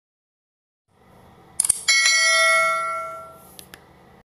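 Subscribe-animation sound effect: a couple of clicks, then a bright bell ding about two seconds in that rings on for about a second and a half and fades. Two small clicks come near the end.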